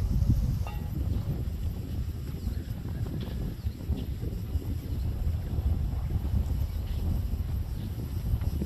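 Wind buffeting the microphone outdoors: a continuous low rumble that rises and falls.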